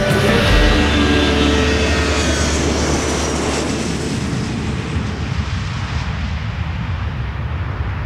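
Jet airliner engines roaring as the aircraft flies past low, the high-pitched hiss of the roar slowly fading as it moves away.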